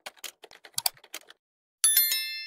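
Keyboard-typing sound effect, a quick uneven run of clicks, then near the end a loud bright bell chime of several ringing tones.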